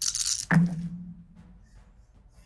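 A short hiss, then a single low booming hit about half a second in that rings down over roughly a second.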